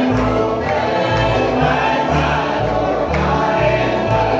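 Live bluegrass band (fiddle, acoustic guitars, banjo and upright bass) playing while several voices sing together in harmony.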